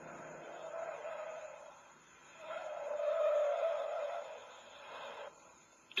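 Tyres squealing on a Ford XC Falcon 500 driven hard through a cone slalom, with car noise under it. There are two squeals, the second louder and longer, starting about two and a half seconds in, and the sound cuts off about five seconds in.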